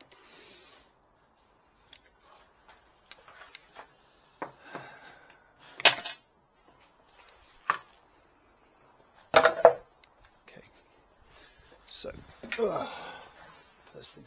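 Tools and workpieces being handled and set down on a workbench: scattered clicks and knocks, with two loud metallic clatters about six and nine and a half seconds in.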